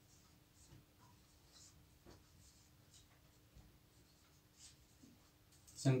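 Marker pen writing on a whiteboard: faint, short, scattered strokes.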